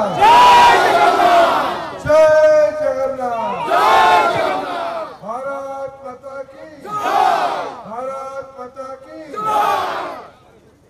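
Slogan chanting in call and response: a man shouts lines over a microphone and PA, and a crowd shouts back in unison each time, four crowd responses in all.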